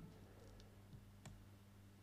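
Near silence: room tone with a faint low steady hum and a few faint clicks.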